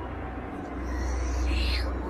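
Eerie radio-drama soundscape: a steady low rumbling drone, joined near the end by wailing cries that glide down in pitch.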